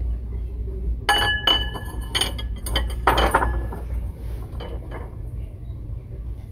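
Stoneware bowls clinking against each other as a bowl is set back onto a stack: about half a dozen sharp, ringing clinks over two and a half seconds, starting about a second in, then faint handling.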